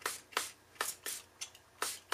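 A hand-pumped spray bottle squirting water in about six short, quick hisses, roughly three a second. The spray is wetting a tilted watercolour sheet to make the paint run and drip.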